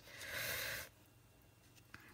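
A woman's short breath out, a hissy puff lasting just under a second, then near silence.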